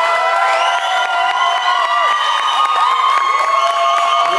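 A crowd of guests cheering and whooping, many voices holding long high shouts at once, with a little clapping mixed in.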